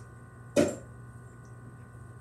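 A single short, sharp vocal exclamation, "Oh," about half a second in, over a steady low electrical hum.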